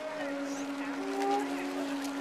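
Several conch shells (pū) blown together at different pitches, overlapping long held tones with one low note sustained throughout; shorter higher notes come in about a second in.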